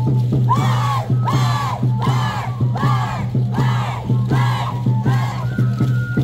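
A group of voices shouting in rhythm, about seven rising-and-falling shouts roughly two a second, over the dance's band music with a steady beat.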